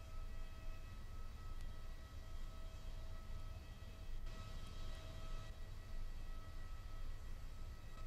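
Steady whine of a parked jet airliner over a constant low rumble, with no rise or fall in pitch.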